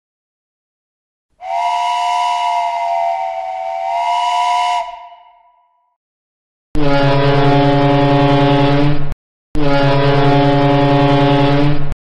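A multi-tone steam whistle sounds a wavering chord for about three seconds, then fades away. After a pause come two long blasts of a deep, foghorn-like horn, with a short break between them.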